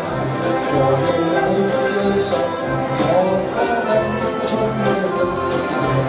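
Live dance band playing: several accordions carrying sustained chords and melody over guitar and a drum kit, with cymbal strokes ticking over a steady dance rhythm.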